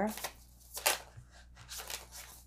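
A deck of tarot cards being shuffled by hand, with three brief papery flicks of the cards about a second apart.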